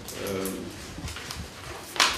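A pause in speech: a brief, faint, low pitched vocal sound early on, then quiet room tone with small clicks, ending in a sharp click.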